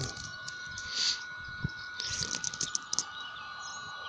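Small wood-burning camp stove with its battery-driven fan running as a steady high whine, with scattered small crackles and ticks from the burning wood.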